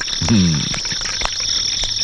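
Crickets chirring steadily in a night ambience, with a short falling vocal sound just after the start and a few faint clicks.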